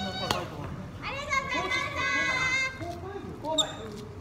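Badminton racket hitting a shuttlecock with a sharp crack just after the start and another sharp hit near the end, in a large echoing hall. In between comes a long, high-pitched call from a voice.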